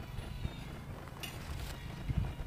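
Wind rumbling on the microphone, with a brief high rattle a little over a second in.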